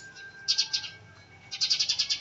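Rapid, high-pitched chirping calls from an animal, in two short bursts, the first about half a second in and the second near the end, over a faint steady high tone.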